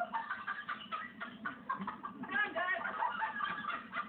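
Several people's voices talking over one another in a jumble, with no words clear enough to make out. The chatter gets busier in the second half.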